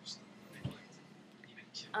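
Low room noise with a soft thump about two-thirds of a second in, and a faint breath just before the end.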